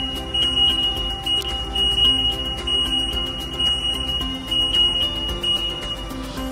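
Collision warning alert sounding one steady high-pitched tone over background music, warning of a forklift and pedestrian too close together; the tone cuts off at the very end.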